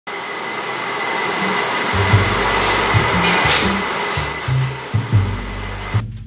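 Steady hiss from a glass-lidded pot on the stove, under background music whose bass line comes in about two seconds in.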